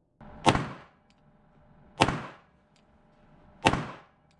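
1911 pistol fired three times, about a second and a half apart, each shot a sharp crack with a short echo from the indoor range.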